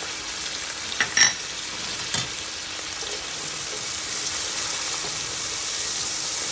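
Onion, celery and whole garlic cloves sizzling steadily in a hot pan, with a few light clinks about a second in and again at about two seconds; the sizzle grows a little louder in the second half.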